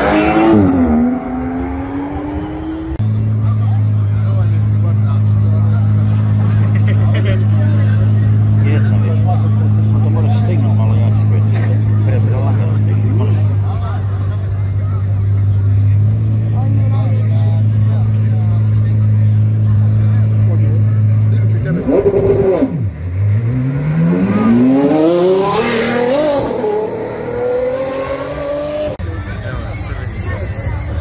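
Supercar engines at a launch strip. One car accelerates hard, its pitch rising, around the start. A long, steady, low engine drone holds for most of the middle. Near the end, another car revs and accelerates away with climbing pitch through several sweeps.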